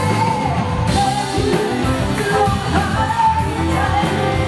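Live rock band: a woman sings lead into a microphone over electric guitars, bass and a Tama drum kit with steady cymbal strokes.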